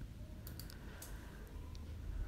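A few faint, short clicks over a low steady hum of room tone.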